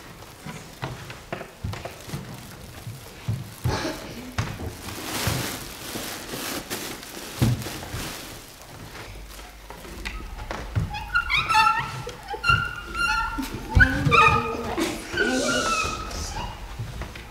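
Rustling and light knocks as a cloth sack is handled. From about eleven seconds on come high, bending calls in children's voices, imitating animals.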